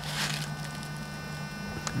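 A steady low hum, with a brief rustle just after the start and a single sharp click near the end.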